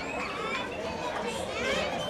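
Overlapping chatter of many voices, high young children's voices among them, with no single voice standing out.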